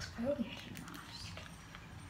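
A brief vocal sound from a woman near the start, then faint crinkling of foil face-mask sachets being handled.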